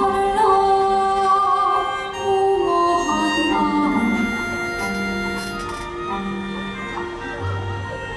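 A woman singing a slow ballad melody into a microphone over a small ensemble with bowed strings. Shorter sung phrases in the first few seconds give way to long held notes, a little softer toward the end.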